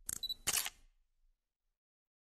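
Camera shutter sound effect: a short click with a brief high beep, then a sharp shutter click about half a second in.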